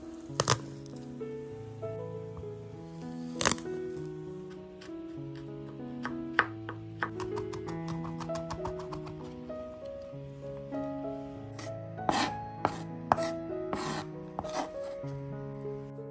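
Chef's knife on a bamboo cutting board crushing garlic cloves, with a couple of sharp knocks near the start. Then rapid mincing: quick, repeated knife strokes on the board, over gentle background music.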